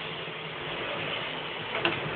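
A ladle stirring and scraping thick, cooking wheat paste in a steel pot, over a steady background hiss, with one sharp click near the end.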